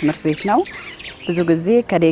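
A woman speaking in an interview, her voice rising sharply in pitch about half a second in, then talking on.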